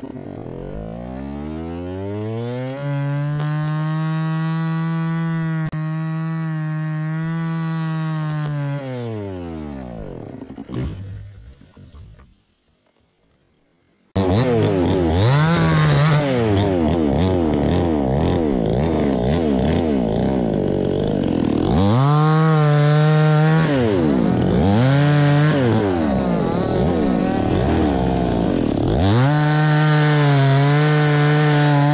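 Two-stroke chainsaw revving up to full throttle, held steady for several seconds, then winding down. After a brief near-silence it comes back loud and cuts into the felled acacia trunk, its revs dipping and recovering again and again under the load.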